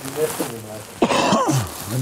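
A man clearing his throat harshly about a second in, between low bits of speech.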